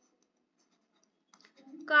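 Near silence, then the faint scratch of a pen writing on paper from a little past halfway in.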